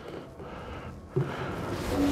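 Low handling noise, then from about a second in a man's low, steady, strained nasal hum while he levers a fishing rod's line guide loose with pliers.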